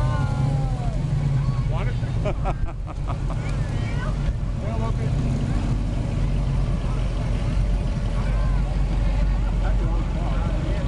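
Low, steady engine sound of classic cars, a first-generation Chevrolet Camaro and then a Pontiac Firebird convertible, driving slowly past one after another, with onlookers' voices over it.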